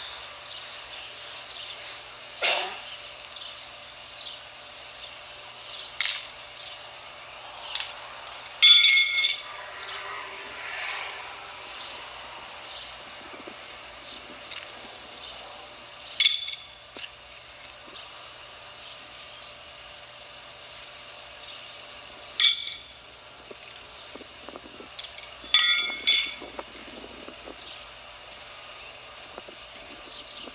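Steel pitching horseshoes clanking with a ringing metallic sound, about eight separate strikes spread through, a few coming in quick doubles, as shoes hit one another and the steel stake.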